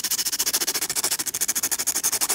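A drawing tool's point being sharpened on a graphite-blackened sandpaper block: a rough rasping of rapid, even back-and-forth strokes.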